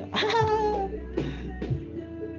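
A drawn-out meow that falls in pitch, then a couple of shorter calls, over background guitar music.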